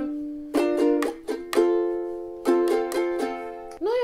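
Ukulele chords strummed and left to ring, about six strums half a second to a second apart, changing chord partway through. They are the interlude's progression of Em, Am, G and D.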